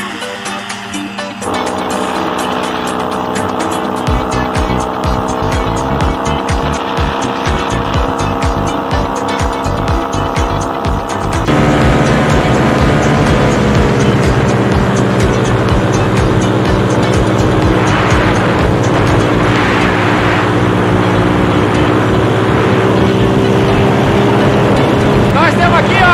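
Paramotor engine and propeller running steadily in flight, first heard at some distance with a fast pulsing beat. About a third of the way in it cuts to a much louder, closer, steadier engine note that dips slightly in pitch and then holds.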